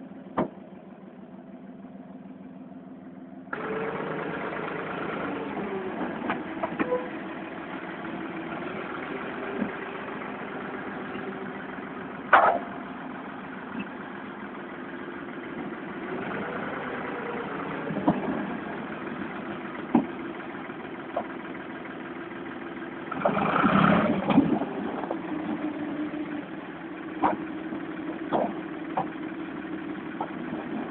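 Tractor engine running, stepping up in level about three and a half seconds in, with its pitch swelling and a louder stretch of working about three-quarters of the way through. Sharp cracks and snaps of the wrecked caravan's panels and timber break through it several times.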